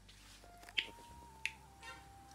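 Quiet room with two short, sharp clicks about two thirds of a second apart and a brief faint rasp near the end.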